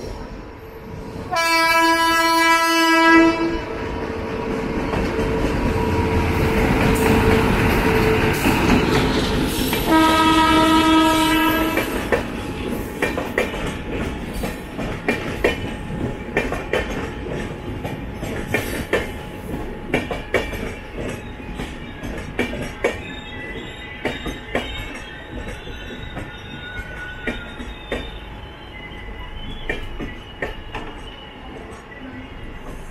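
Two blasts of a multi-tone train horn, each about two seconds long, one about a second in and one about ten seconds in, over the rushing noise of trains running side by side. From about twelve seconds on, the passing express coaches' wheels click over rail joints in an uneven clatter.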